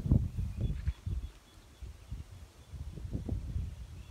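Wind buffeting an outdoor microphone: an uneven low rumble, strongest in the first second and fainter after that.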